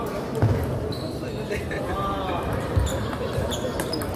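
Celluloid-type table tennis balls ticking off tables and rubber bats, several sharp clicks spread across the few seconds, over a steady babble of voices from the crowded hall.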